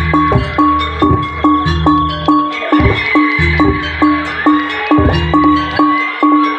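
Live Jaranan gamelan music: tuned metal gong-chimes struck in a steady beat of about two a second over a deep, sustained low tone that breaks off briefly twice, with a wavering high melody line on top.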